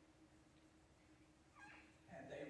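Near silence: room tone with a faint steady hum. A brief voice sound near the end, as speech starts up again.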